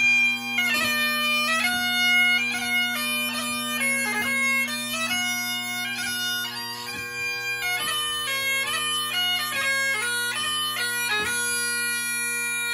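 A solo Great Highland bagpipe playing a 2/4 march: steady drones hold under the chanter's melody, with quick grace notes cutting between the melody notes.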